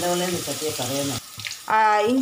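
Crushed ginger and garlic dropped into hot oil and frying, a loud sizzle that dies down about a second in.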